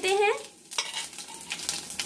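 Cumin seeds sizzling in hot oil, an even hiss with many fine crackles, starting about three quarters of a second in, just after they are dropped into the pan.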